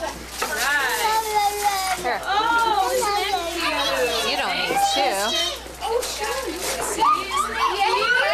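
Several young children's voices talking and exclaiming over one another, without a break, as an excited crowd of kids.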